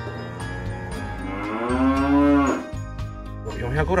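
A single long, drawn-out moo-like call of about two seconds that rises slowly in pitch and drops off at the end, laid over a soft, steady music bed.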